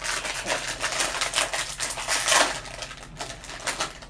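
A foil blind bag crinkled and torn open by hand: a dense, irregular crackle of rustling foil, loudest a little past halfway.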